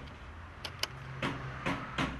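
Footsteps and a glass entrance door being handled as people walk through it: several sharp clicks and knocks, unevenly spaced, over a low steady hum.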